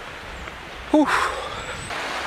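A man blows out a long, tired breath, a breathy "whew", about a second in, the weary exhale of someone fatigued from a long walk. Before it there is a low rumble of wind on the microphone.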